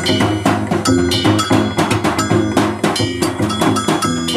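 Live free jazz improvisation: plucked double bass notes under a dense run of sharp, clicking percussion hits from the drum kit, some with a short metallic ring.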